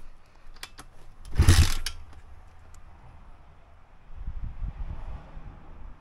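Pit bike with a 170 engine being kick-started: a couple of light clicks, then a loud kick of the kickstarter about a second and a half in, and a low chugging about four seconds in as the engine turns over without catching.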